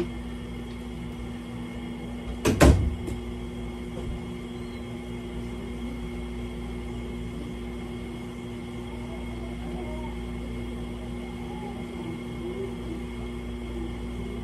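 A room door pulled shut, closing with a clatter about two and a half seconds in. A steady low hum follows.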